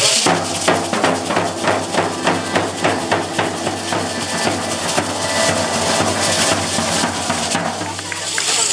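Matachines dance drum beating a fast, steady rhythm for the dancers.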